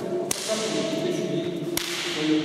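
Two sharp slap-like cracks about a second and a half apart, from martial artists in uniforms grappling through a hapkido technique; each rings on briefly in the hall.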